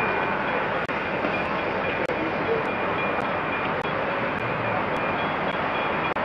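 Steam locomotive Flying Scotsman, an LNER A3 Pacific, moving slowly with a steady hiss of steam. The sound cuts out very briefly twice, about one and two seconds in.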